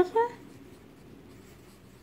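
Pencil writing on a paper textbook page: a faint scratching as the words are written out by hand.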